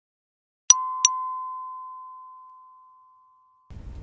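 Bell-like chime struck twice in quick succession, about a third of a second apart. It rings on one tone that fades out over about two seconds.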